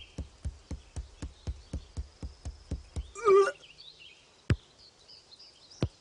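Cartoon sound effects: a run of even knocks, about four a second, stops about three seconds in. A short cry with wavering pitch follows, then three single knocks spaced over the last seconds.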